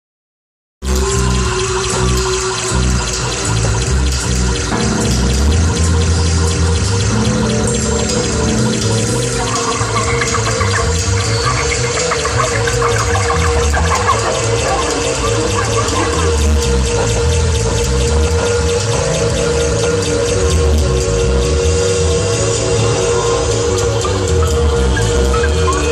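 Live experimental noise music over a PA: a held drone tone and a dense hissing wash over heavy bass. It cuts in abruptly just under a second in and stays loud.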